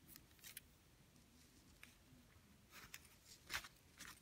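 Near silence with a few faint, short clicks and rustles, the loudest near the end: fingers working a beading needle and thread through seed beads.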